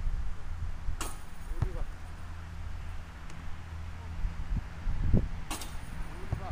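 A basketball strikes the metal hoop twice, about a second in and again near the end, each hit a sharp clang with a short metallic ring, with a few duller knocks just before the second clang, over a steady low rumble.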